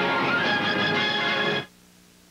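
Music of a TV programme bumper, which cuts off suddenly about a second and a half in, leaving only a faint low hum.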